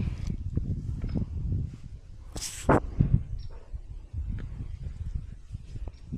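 A heifer close to the microphone blowing out once through its nose, a short hissing breath about two and a half seconds in. Around it are rustling and handling noise and a couple of soft knocks.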